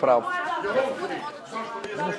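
Overlapping voices: several people talking at once.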